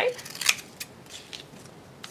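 Scissors cutting a strip of 5 cm kinesiology tape: one sharp snip about half a second in, followed by a few fainter snips.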